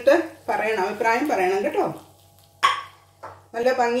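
A voice talking in short phrases, with a brief sharper sound about two and a half seconds in.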